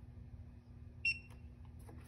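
Stemco SAT RF handheld programmer giving one short, high electronic beep about a second in, signalling that it has finished programming the DataTrac hubodometer. A few faint handling clicks follow near the end.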